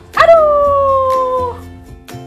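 A single long howl-like wail that starts sharply, slides slowly down in pitch for about a second and a half, then breaks off, over background music with a steady low beat.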